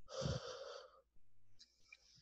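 A person's breath close to the microphone, a single noisy breath lasting under a second, with a fainter breath near the end.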